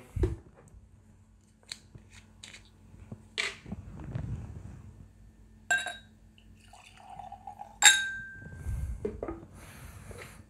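Whisky being served into a glass: scattered light clicks and knocks from the bottle and its aluminium cap, then two glass clinks, the second ringing on for about a second.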